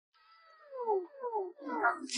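A cat meowing three times in quick succession, each meow falling in pitch and louder than the last.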